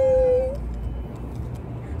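A woman's long, high-pitched 'aww', held on one note and sliding slightly down, ending about half a second in, followed by a low steady rumble.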